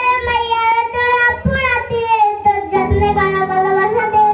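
A young boy singing into a handheld microphone, a sung melody with long held notes that glide slowly in pitch.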